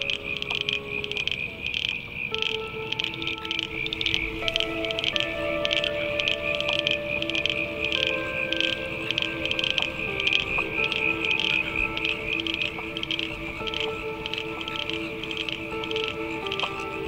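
A chorus of frogs calling in quick short pulses, about three a second, over music with soft held chords.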